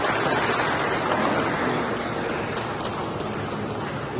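Audience applauding: dense, steady clapping that eases off a little toward the end.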